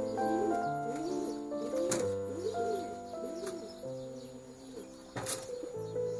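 Male domestic pigeon cooing: a run of about five rising-and-falling coos in the first half, over background music. Two sharp clicks, about two seconds in and near the end.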